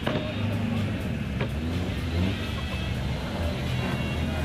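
A BMW 318 Ti rally car's engine running at low revs, its pitch rising and falling a little as the car rolls up the start ramp. There is a sharp click at the start and another about a second and a half in.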